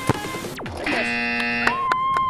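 A football struck hard in a free kick, a sharp thud just after the start over background music. The music then stops and an edited electronic sound effect follows: a falling swoosh, a buzzing chord, and a held wavering tone near the end.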